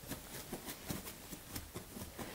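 Faint, irregular light clicks and scratches, several a second.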